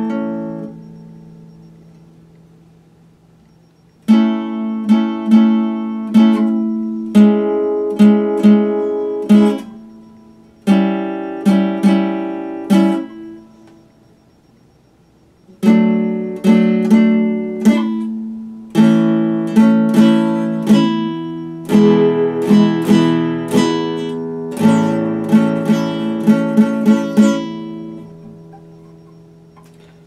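Nylon-string classical guitar played fingerstyle: phrases of plucked notes and chords, each note ringing and fading, with two short lulls where the sound dies away before the next phrase starts.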